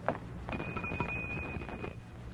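Radio-drama sound-effect footsteps: a few faint thumps about half a second apart. A thin, steady, high-pitched tone starts about half a second in and lasts for over a second.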